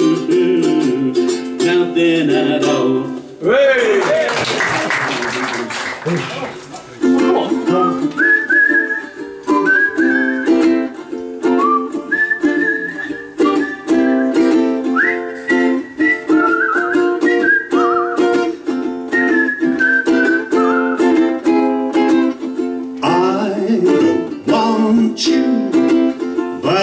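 Strummed chords ring out, then a few seconds of applause. From about seven seconds in, a ukulele strums a steady accompaniment with a high, clear whistled melody over it.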